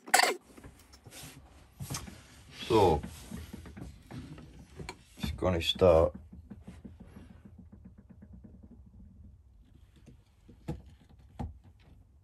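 Wooden crib panels handled on a workbench: a sharp knock right at the start and two light clicks near the end. In between come a couple of short murmured vocal sounds.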